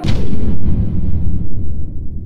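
A cinematic boom sound effect: a sudden loud hit followed by a deep rumble that slowly dies away.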